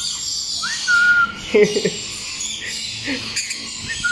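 Short whistled notes that slide up and then hold steady, with faint thin high chirps from small red-flanked lorikeets. There are a few brief low sounds in between.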